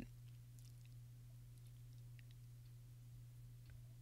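Near silence: room tone with a steady low hum and a few faint small clicks.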